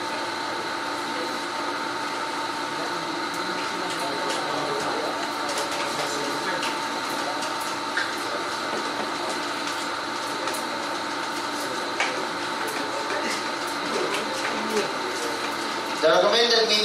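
Classroom room tone: a steady hiss with a constant electrical hum, a few faint clicks, and faint voices in the background.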